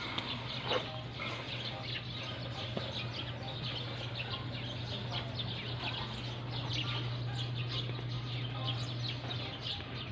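Many birds chirping in quick, overlapping calls, over a steady low hum.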